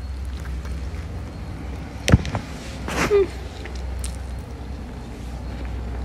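A person biting into and chewing a fried chicken burger, with mouth and handling noises: a sharp click about two seconds in and a louder noisy burst about a second later, over a steady low rumble.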